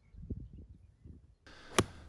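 An eight iron striking a golf ball on a full swing: a short swish of the club, then one sharp, clean click of contact near the end, with the ball caught pure.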